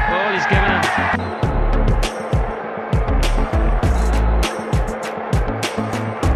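Background music with a heavy bass and a steady drum beat; a held chord stops about a second in.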